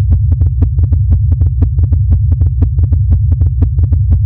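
Sonified starquakes of a red giant star: the star's oscillations shifted up into the range of hearing, heard as a loud, deep drone with a rapid train of clicks, about six a second. The deep pitch is the sign of the star's great size.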